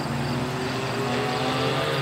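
Car engine running hard on a distant part of the circuit, heard from trackside, its pitch climbing slowly as it accelerates.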